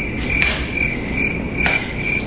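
A high-pitched chirp repeating evenly, about two to three times a second, with two short clicks about half a second and a second and a half in.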